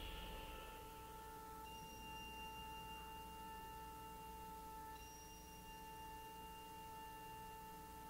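A faint, steady held tone with a few overtones, unchanging in pitch and level, with a short breathy rush just as it begins.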